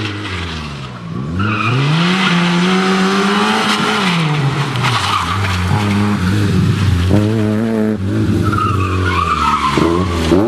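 Fiat Cinquecento rally car driven hard, its engine revving up and dropping back several times through gear changes and corners. Its tyres squeal as it slides through the turns: once about a second and a half in, and again near the end.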